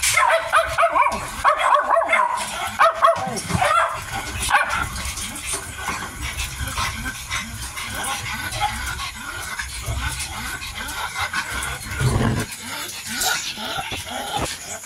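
Mini dachshund puppies feeding at a bowl: short yips and whimpers in the first few seconds, then quieter, rapid eating noises.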